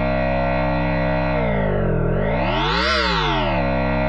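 Harsh FM growl synth bass holding one low, buzzy note. In the middle its tone sweeps down, then up and back down again.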